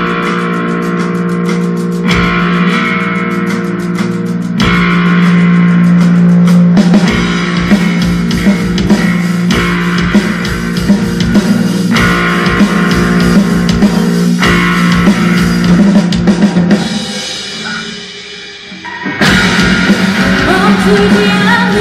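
Rock band playing live: electric guitars, bass and drum kit in an instrumental passage over a held low note, with chord changes every couple of seconds. Near the end the band drops back for about two seconds, then comes back in full.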